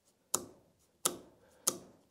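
Three sharp metallic clicks, a little over half a second apart: the saw chain of a Hyundai HYC40LI 40V cordless chainsaw being pulled out of the guide bar's groove and snapping back into it. This is a tension check, and the snap back shows the chain is at about the right tension.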